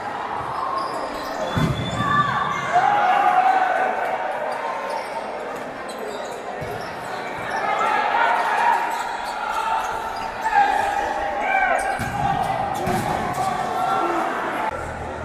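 Futsal ball kicked and bouncing on a hard indoor court, a few sharp thuds among shouts from players and spectators, in a large sports hall.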